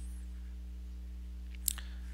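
Steady low electrical hum under the recording, with one short click near the end.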